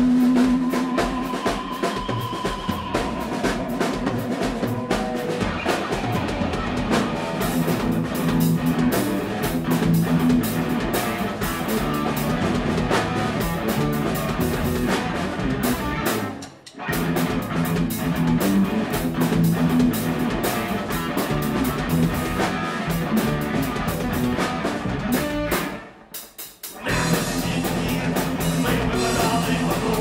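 Live rock band playing an instrumental passage on electric guitar, bass guitar and drum kit, with two brief stops in the music, one about halfway through and a slightly longer one near the end.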